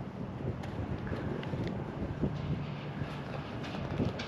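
Low, even wind rumble on the microphone outdoors, with a few faint knocks in the first couple of seconds.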